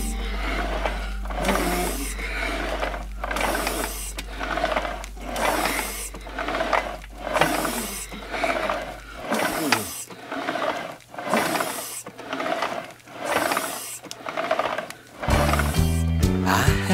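A rowing-machine sound effect: rhythmic swishing strokes, a little more than one a second, each rising and falling, over a held low backing note that stops about nine seconds in. Backing music comes back in near the end.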